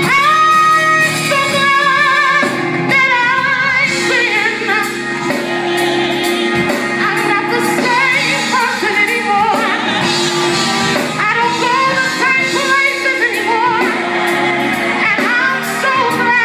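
A woman singing a gospel song live with a band, her voice holding long notes with a wide vibrato over the accompaniment.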